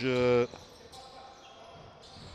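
A commentator's voice for the first half second, then quiet indoor basketball court sound with a single ball bounce on the hardwood floor about a second in.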